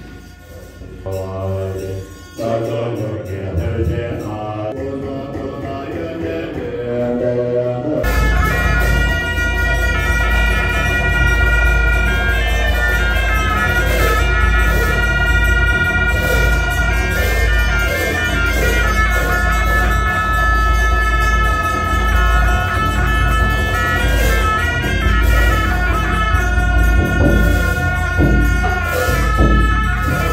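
Two gyalings, Tibetan double-reed horns with brass bells, played together in long held, wavering notes from about eight seconds in. A deep rumble sits underneath.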